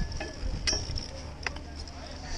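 Strong wind buffeting the microphone as a steady low rumble, with a few sharp clicks on top: one at the start, one a little after half a second and one about a second and a half in.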